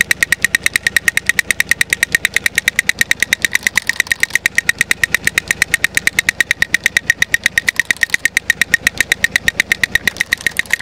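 Two clockwork drummer toys running, their plastic sticks tapping toy drums in a fast, even rattle of about eight taps a second.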